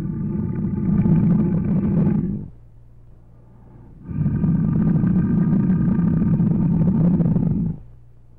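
A big cat giving two long, deep roars, each lasting about three and a half seconds, with a short pause between them.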